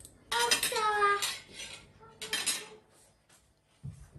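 Metal forks and spoons clinking against each other as they are handled, in two short clusters, about half a second in and just after two seconds. A short, high, falling vocal sound from a child overlaps the first clinks.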